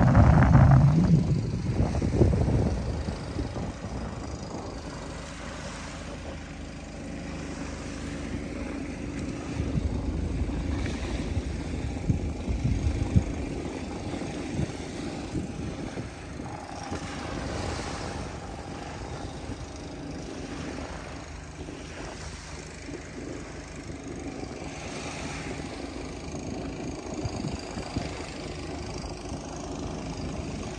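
Wind buffeting the microphone in gusts, loudest right at the start and again around ten seconds in, over a low outdoor rumble. A faint steady engine drone hums underneath through the middle.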